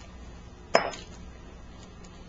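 A single sharp clink of kitchenware knocking together, with a short high ring, about three-quarters of a second in.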